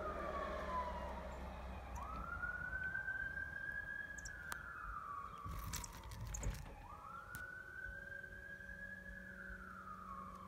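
Emergency-vehicle siren in wail mode: each cycle rises quickly, holds high, then slides slowly down, repeating about every five seconds. A few sharp clicks sound about six seconds in.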